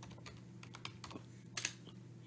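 Faint computer keyboard keystrokes as a password is typed at a sudo prompt, with one louder keystroke about one and a half seconds in, over a low steady hum.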